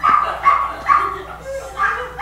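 Small dog yipping in short, high-pitched yips, four in a row about half a second apart with a short gap before the last.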